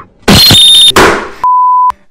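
An edited-in sound effect: a very loud, clipped burst of noise with a high whistle in it for about two-thirds of a second, then a second burst that fades away. Near the end comes a pure, steady bleep tone lasting about half a second, the standard censor beep.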